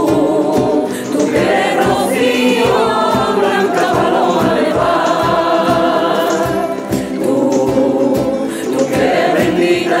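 A rociero choir of mixed voices singing in harmony, accompanied by Spanish guitars strummed in a steady rumba rhythm of about three strokes a second.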